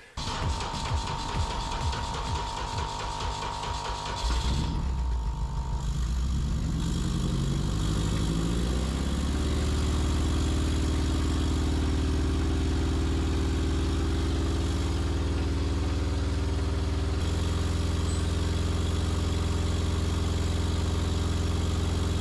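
Honda K24A2 2.4-litre inline-four engine cranking unevenly for about four seconds, then catching. Its speed climbs over the next few seconds and settles into a steady fast idle of about 2,300 rpm.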